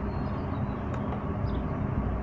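Steady background noise with a low hum, and a faint click about a second in.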